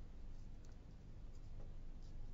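Quiet room tone: a faint low hum with a few soft, light clicks scattered through it.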